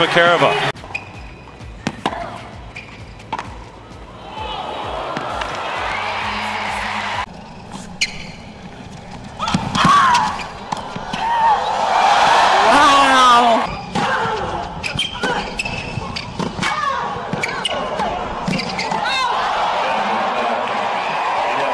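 Tennis ball struck by racquets on a hard court: sharp hits spaced out through a rally. There is crowd noise throughout, with cheering and shouts swelling loudly about halfway through.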